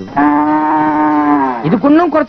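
A cow mooing: one long, steady moo of about a second and a half that sags slightly in pitch at its end.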